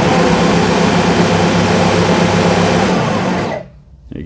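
Ryobi 40V brushless cordless snow thrower (RY40862VNM) running at high speed, steady and loud, its bent shaft making it far noisier than it should be. It shuts off shortly before the end.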